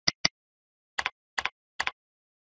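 Two quick computer mouse clicks, then three keyboard keystrokes about half a second apart as the number 100 is typed into a field.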